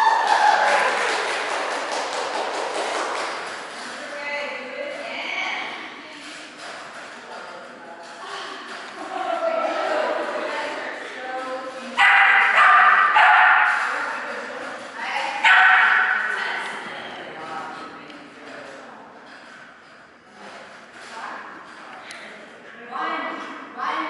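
Small dog barking in short bursts while running an agility course, mixed with a handler calling out commands. The loudest two bursts come a little past halfway.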